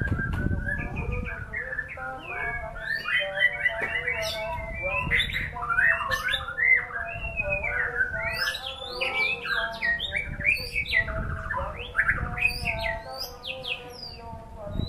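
White-rumped shama singing a long, unbroken song of rapid, varied whistles, trills and quick up-and-down sweeps.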